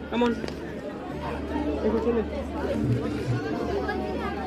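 People talking around the microphone, with a steady low rumble underneath from about a second in.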